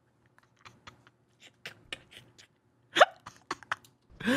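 Stifled, silent laughter: a string of short breathy gasps and clicks close to the microphone, with one louder hiccup-like catch about three seconds in.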